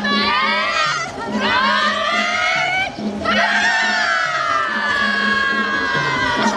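A group of voices screaming together in long held shouts, the pitch sagging through each, with two short breaks for breath about one and three seconds in.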